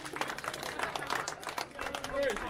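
Scattered applause from a small crowd: many individual hand claps at an uneven rate.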